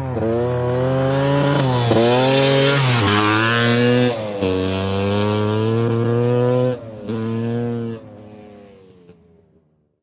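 A small motor scooter engine revving in several runs, its pitch rising and falling between them, then fading away over the last two seconds.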